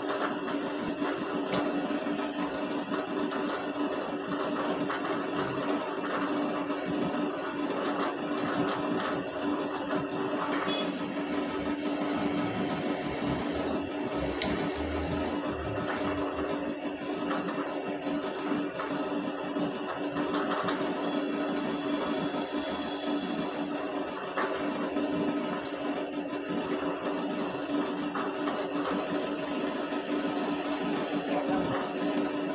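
Bench drill press motor running steadily while its bit drills into a stainless steel knife blank.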